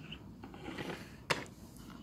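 Faint handling of a small plastic case, with one sharp click a little over a second in.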